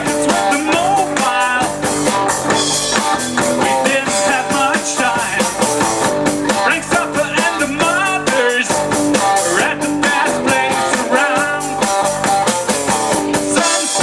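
Live rock band playing loud: electric guitars over a drum kit keeping a steady beat with cymbals.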